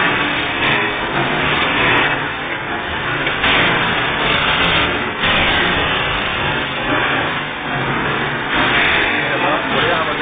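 Loud, steady machinery noise with brighter surges every second or two, mixed with indistinct voices.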